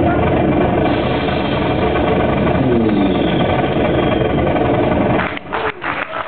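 Live improvised turntable and trumpet music: a dense, droning wall of sound with several falling pitch glides in the middle, breaking off into choppy fragments about five seconds in.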